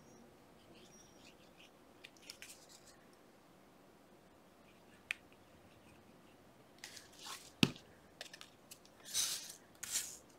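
Quiet handling of paper playing cards and a plastic glue bottle: faint rustles and a small click while glue is squeezed onto a card. A single sharp knock comes about three-quarters of the way in, as the glue bottle is set down on the cutting mat, followed near the end by a brief rustle of the cards being rubbed and pressed together.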